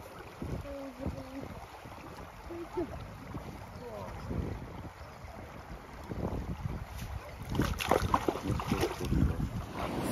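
Small waves washing over a sand and shingle shore, with wind buffeting the microphone, louder and gustier over the last couple of seconds.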